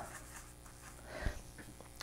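Quiet room tone with a faint steady hum, and one soft brief sound a little past a second in.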